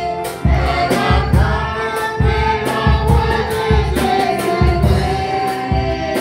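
Gospel hymn sung with a woman leading on a microphone, accompanied by an electronic keyboard with a steady beat of a little under two a second.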